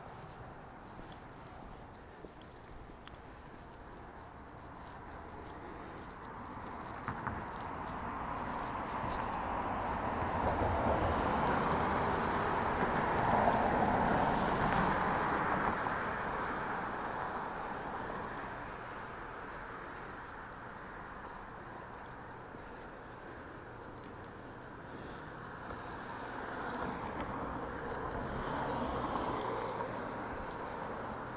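Street traffic: a passing vehicle's sound swells and fades, loudest about halfway through, with a smaller swell near the end. A faint, irregular high ticking runs under it.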